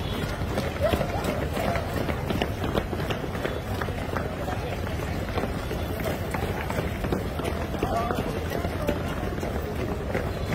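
Many feet pounding on a paved street as a column of uniformed police runs in formation, with voices in the background.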